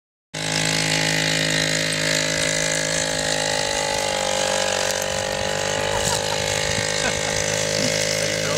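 Small youth ATV engine running steadily at a nearly constant pitch as the quad moves slowly across grass.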